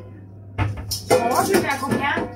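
A spoon knocking and scraping in a ceramic bowl as a cake mixture is stirred, with a sharp clink about half a second in. A child's voice takes over in the second half.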